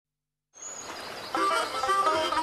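Faint outdoor ambience with a single brief high bird chirp, then music comes in a little past halfway, a tune of short held notes.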